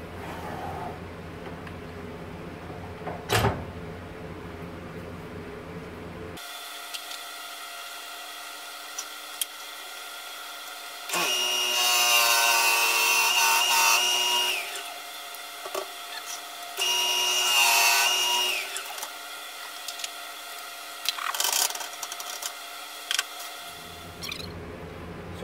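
Wood lathe running with a drill bit in the tailstock chuck boring a shallow hole into the face of the spinning wood blank, fed in twice: about three seconds of cutting, then about two. A single knock about three seconds in.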